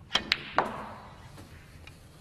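Snooker shot: the cue tip strikes the cue ball and ball-on-ball collisions follow, three sharp clicks within about half a second, the last ringing on. Two faint ticks follow later.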